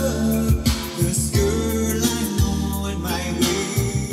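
A soul-style song with a sung melody over a steady bass line, played over hi-fi speakers from a 7-inch vinyl single on a Rega Planar 3 turntable.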